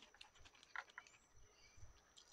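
Near silence: faint outdoor background with a few soft ticks and two short high chirps about a second in, over a thin steady high tone.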